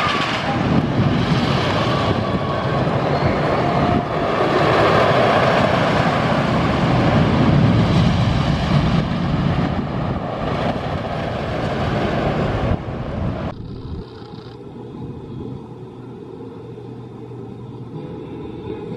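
Shivering Timbers, a CCI wooden roller coaster, with its train running over the wooden track: a loud rumbling that swells to a peak midway and eases off. About fourteen seconds in it gives way abruptly to a quieter, duller ride-area background.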